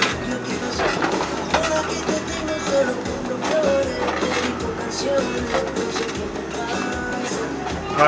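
Background music with steady, held tones at an even level.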